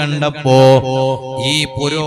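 A man's voice chanting in a sung, intoned style, holding pitched notes between short syllables.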